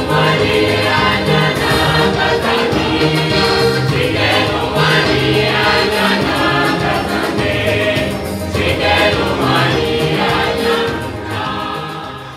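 Mixed choir of men and women singing together in parts, with full voices and a sustained low line. It eases off slightly near the end.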